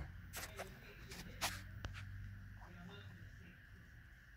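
Faint handling noise: several light clicks and knocks in the first two seconds, over a low steady hum.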